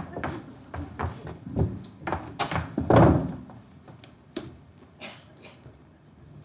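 Footsteps knocking on a stage floor, a quick irregular run of sharp knocks, with one louder thump about three seconds in; only a few faint knocks follow.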